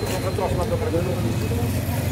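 Indistinct voices talking over a steady low hum of street noise.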